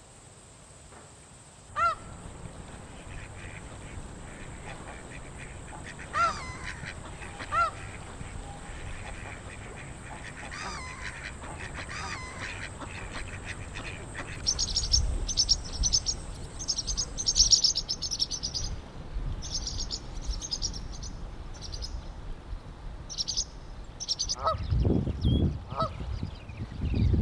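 Canada geese honking: a few single loud honks in the first seconds and more near the end. A steady thin high whine runs through the first two-thirds and then stops, and rapid high chirping of smaller birds fills the second half. A low rumble comes in near the end.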